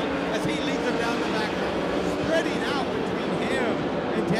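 410 sprint car V8 engines running at racing speed around a dirt oval, a steady drone, with people's voices talking over it.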